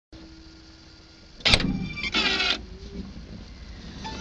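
A car boot lid being worked: a sharp clunk about one and a half seconds in, then a short rasping creak about half a second later, over a low steady hum.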